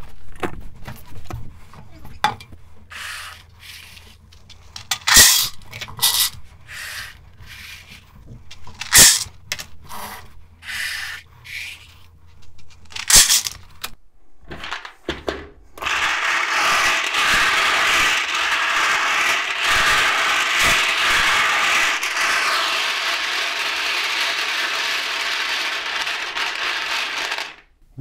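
Hard plastic numbered draw balls being handled: scattered clicks and knocks at first, then, about halfway through, a loud continuous clatter of many balls churning together as they are mixed in a large clear bowl, stopping shortly before the end.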